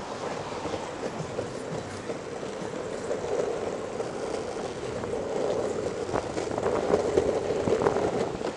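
Longboard wheels rolling over a concrete sidewalk: a steady rumble with sharp clacks as the wheels cross the slab joints, growing louder in the second half.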